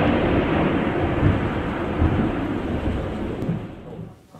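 A thunder sound effect rumbling on after a sudden crash, fading slowly with a couple of brief swells and dying away near the end.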